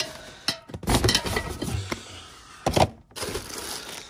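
Handling noise from a cardboard tray of aerosol spray cans being set down into a plastic storage tote. There are a few sharp knocks and a stretch of clattering and scraping as the cans and box shift against the plastic.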